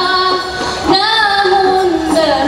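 A female lead singer sings a drawn-out, ornamented qasidah melody with rebana frame drums, with a single sharp drum stroke just before one second in.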